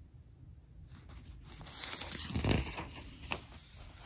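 Paper rustling as a glossy newspaper coupon insert page is turned by hand, loudest about two and a half seconds in.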